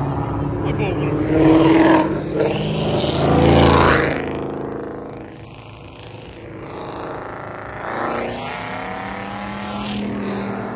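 V8 and other sports-car engines, mostly Ford Mustangs, accelerating past one after another, revving up through the gears. The two loudest passes come in the first four seconds, then the sound dips before another car swells past near the end.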